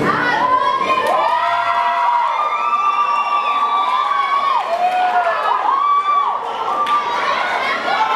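A crowd of onlookers cheering and whooping, with many long held shouts overlapping one another. The dance music's bass fades out within the first two seconds.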